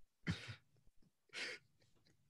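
A man coughing twice, two short faint coughs about a second apart, amid laughter.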